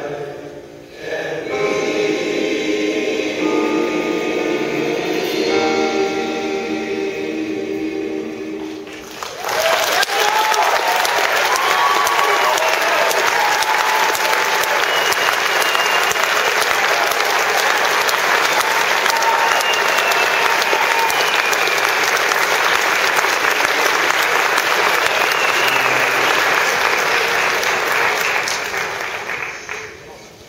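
Large male choir holding a final sustained chord, which cuts off about nine seconds in. Loud audience applause follows at once, with some cheering and whistling, and fades away near the end.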